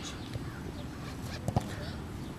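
Soccer field ambience: a steady low rumble with faint distant voices, and a sharp double knock about a second and a half in.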